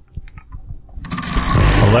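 Prize wheel being spun: about a second in, a loud, rapid clatter starts and keeps going, with voices over it.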